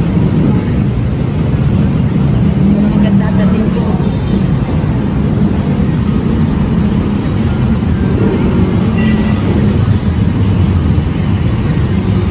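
Steady low rumble of road traffic and idling vehicle engines, with faint voices of passers-by in the background.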